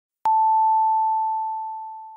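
A single pure, high chime-like tone that starts sharply about a quarter second in and fades away slowly.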